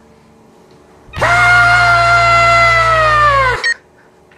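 A long, high, held "aaah" cry from a voice, starting about a second in and holding one steady pitch before sagging slightly and cutting off near the end, with a low hum sounding underneath.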